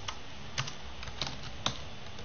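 Typing on a computer keyboard: about half a dozen separate, irregularly spaced keystroke clicks.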